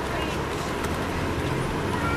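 Interior of an MCI D4000 coach under way, its Detroit Diesel Series 60 engine running with a steady low drone over road noise as the bus picks up speed.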